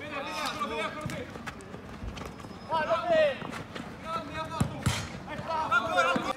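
Men shouting and calling during a small-sided football match, in several short bursts, with two sharp thuds close together near the end, typical of a football being kicked.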